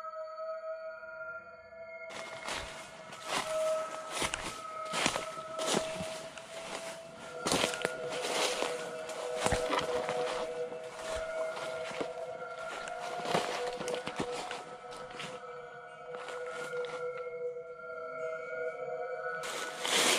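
Irregular crunching footsteps through dry leaf litter and brush, starting about two seconds in and stopping just before the end. Under them runs a steady, eerie drone of sustained tones, like background music.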